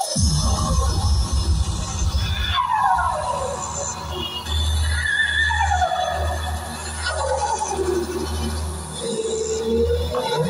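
Electronic music played through a Pizaro 7800BT Bluetooth tower speaker, with heavy bass throughout and a falling sweep in the melody every couple of seconds.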